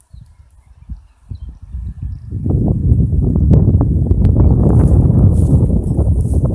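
Wind buffeting the microphone: patchy low gusts at first, then a loud, continuous rumbling blast from about two seconds in.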